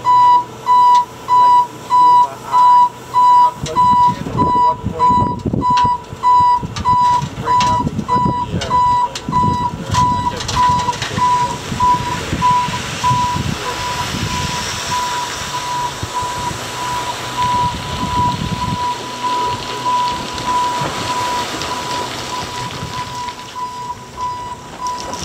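Dump truck unloading dirt. A warning beeper sounds about twice a second throughout, loudest in the first few seconds, while the load slides out of the raised body with a low rumble from about four seconds in that turns into a rushing pour after about ten seconds.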